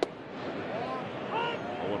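Ballpark crowd noise with a single sharp pop at the very start as the pitch lands in the catcher's mitt, followed by a commentator's voice.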